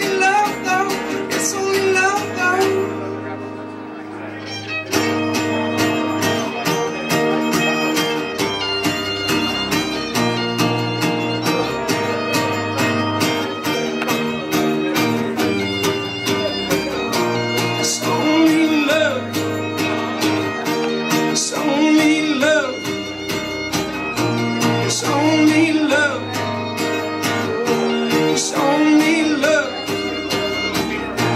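Live acoustic trio playing an instrumental break: a fiddle carrying the lead with sliding, bending notes over strummed acoustic guitar and upright bass. The band thins out briefly about three seconds in, then comes back in full about five seconds in.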